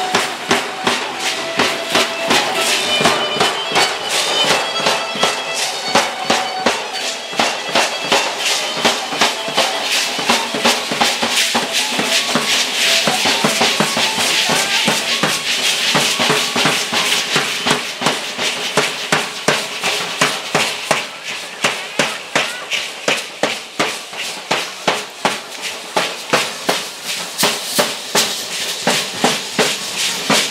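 Matachines dance music: a large drum beaten in a steady, fast rhythm, with the dancers' hand rattles shaken in time. A melody of held notes plays over the beat for about the first ten seconds.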